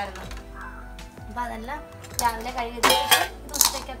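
Stainless steel plates and pans clinking and clattering against each other as they are handled during washing up, with several sharp clinks in the second half. Background music plays underneath.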